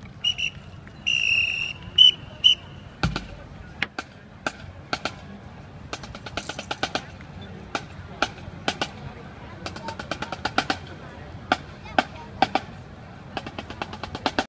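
A marching band's command whistle gives several short blasts and one longer blast. A bass drum thump follows, then snare drum clicks tap out a steady marching beat as the band marches off.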